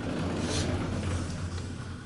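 Sliding wardrobe door rolling along its track: a low, steady rumble.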